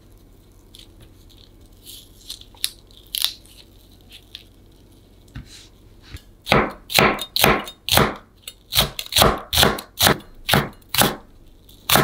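A santoku knife finely slicing split layers of Korean green onion on a wooden cutting board: a quick, even run of knife strokes, about two or three a second, starting about halfway in. Before that come faint soft crackles and clicks as the onion layers are pulled apart by hand.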